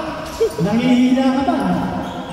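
Basketball game sounds on a hardwood gym court: a ball knock about half a second in, followed by a man's long, drawn-out shout.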